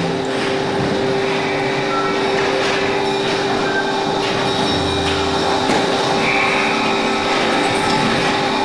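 Dense electroacoustic drone and noise music: a loud, continuous hissing wash with a few steady held tones and scattered sharp clicks, rumbling like a passing train.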